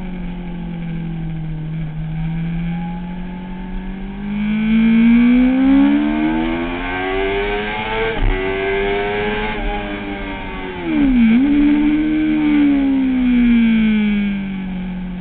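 Kawasaki ZX-6R's inline-four engine heard from onboard under hard acceleration on track, the revs climbing steadily through a long pull, with a brief drop about eight seconds in as it shifts up. The revs then fall off as the bike slows, with a sharp momentary dip near eleven seconds before dropping again.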